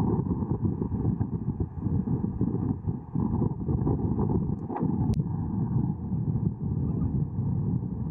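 Strong storm wind buffeting the microphone, a steady, fluctuating low rumble, with one sharp click about five seconds in.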